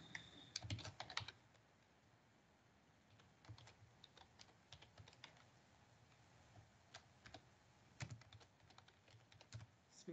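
Faint computer keyboard typing: short runs of keystrokes with pauses between them, about one second in, around three to five seconds, near seven seconds and again toward the end.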